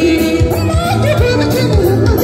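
Live band playing dance music with a singing voice: keyboard, electric bass and electric guitar over a steady beat, with the lead vocal wavering and sliding between notes.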